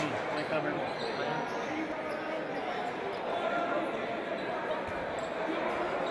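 Echoing sports-hall ambience during a handball game: spectators and players talking, with occasional thuds of a handball bouncing on the wooden court.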